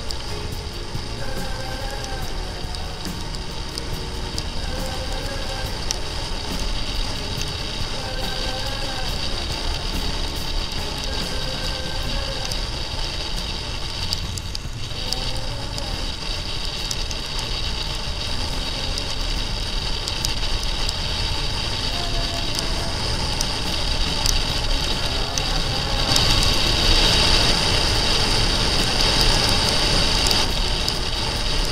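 Wind and road noise from a motorcycle ridden on a wet road, with music playing over it through the first half. The wind noise grows louder near the end.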